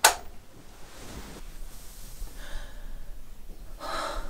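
A woman breathing hard, as if waking with a start: a short, loud sharp sound at the very start, then three breaths about a second and a half apart.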